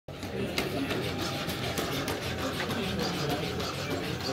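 Indistinct chatter of many people talking at once, steady throughout, with a few light clicks.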